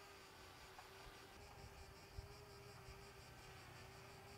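Near silence: faint outdoor background with a faint steady hum.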